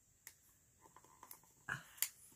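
Near silence: room tone with a few faint, brief sounds and a short puff of breath shortly before the end.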